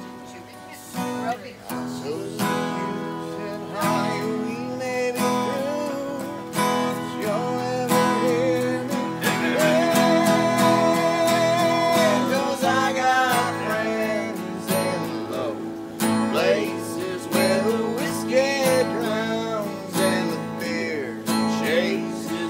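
Acoustic guitars strumming chords of a slow country song, with a wavering melody line carried above them.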